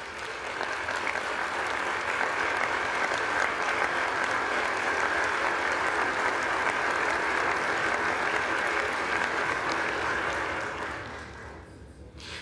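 A large crowd applauding in a big chamber, swelling in the first second, holding steady, then fading away over the last two seconds.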